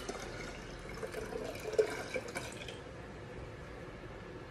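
Lemonade being poured: a faint trickle of liquid, with a small knock a little under two seconds in.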